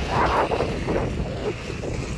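Wind buffeting a handheld phone's microphone: an uneven low rumble that swells and falls.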